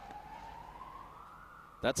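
A faint siren wailing, its single tone slowly rising in pitch, under the ground's open-air background.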